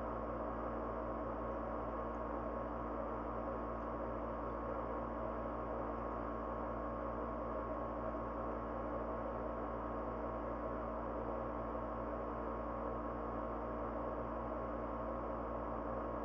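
A steady background hum of several constant tones over a low, even hiss, unchanging throughout; the wire twisting makes no sound that can be picked out.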